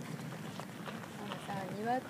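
Footsteps on a gravel garden path, with a person's voice rising in pitch during the last half second.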